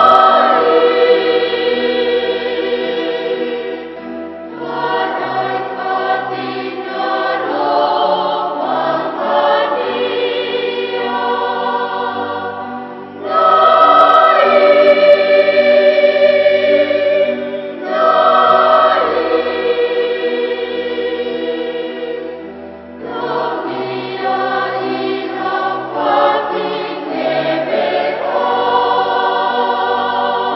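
A choir singing in long, held chords, phrase after phrase, with short breaks between the phrases.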